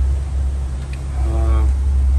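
Steady low drone of a motor yacht's turbocharged diesel engines running at about 1,300 rpm cruising speed, heard from inside the wheelhouse.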